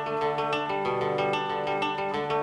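Live acoustic guitar played with a second stringed instrument: an instrumental passage of picked, ringing notes with no singing. The chord shifts about two-thirds of a second in.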